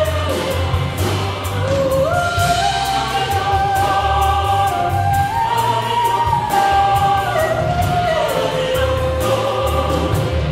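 Choir singing a slow melody of long held notes that climbs step by step and then falls back, over an instrumental accompaniment with a low pulsing bass.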